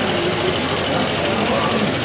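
Loud, steady hubbub of many people talking at once in a crowded hall, with no single voice standing out over a dense background noise.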